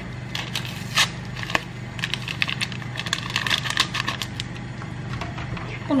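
A small paper vanilla sachet being torn open and crinkled, its powder shaken out into a mixing bowl. It gives a scatter of short, sharp crackles, most about a second in and again midway.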